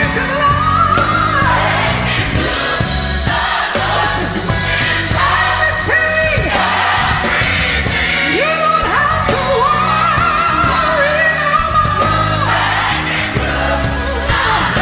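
Gospel song: a solo voice sings long held notes that slide between pitches, over instrumental backing with a steady bass.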